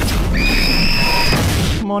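Movie sound effects of a lab fusion experiment running out of control: a loud, dense rush of blasting, fiery noise with a steady high whine over it for about a second. It cuts off suddenly near the end.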